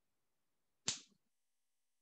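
Near silence broken by a single short, sharp click or smack about a second in, fading within a fraction of a second.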